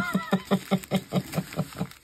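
A woman laughing: a quick run of about eight 'ha' pulses a second, tailing off near the end.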